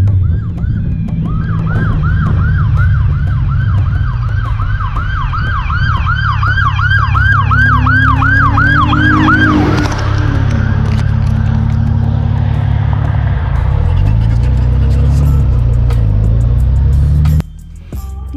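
Police car siren on a fast yelp, about two and a half rising-and-falling sweeps a second, coming up from behind and cutting off about ten seconds in. A motorcycle engine runs underneath and drops in pitch as it slows a few seconds later.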